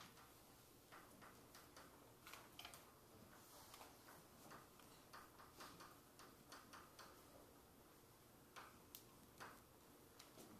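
Chalk tapping and scratching on a blackboard as an equation is written: faint, irregular clicks.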